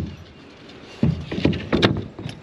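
Close handling noise: a quick run of knocks and rubbing, starting about a second in, with the sharpest knock near the end.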